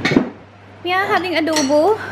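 A brief clatter of tableware, dishes and cutlery knocking together, right at the start; then a voice speaks for the second half.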